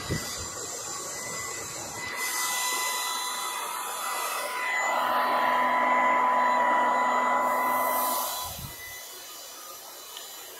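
Handheld hair dryer running, a steady motor whine over the rush of air, growing louder for a few seconds and then dropping back about eight and a half seconds in.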